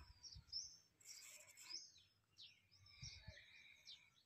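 Near silence with faint bird chirps: scattered short, high calls that bend in pitch.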